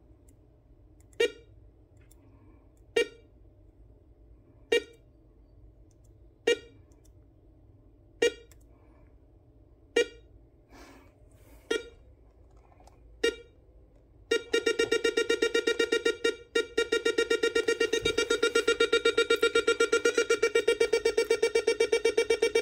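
Two-op-amp tempo generator circuit on a 130-in-1 electronic kit, giving short pitched beeps about every 1.7 seconds. About 14 seconds in, it switches to a fast pulsing buzz of roughly eight pulses a second.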